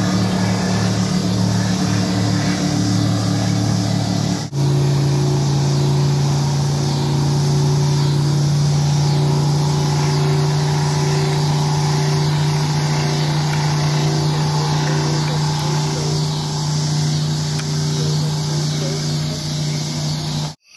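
Motorboat engines running with a steady hum. About four and a half seconds in, the sound breaks off briefly and resumes at a different, steady pitch.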